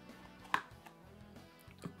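Snap-on lid of a small plastic paint tub pried off, with one sharp plastic click about half a second in and a smaller tick near the end, over faint background music.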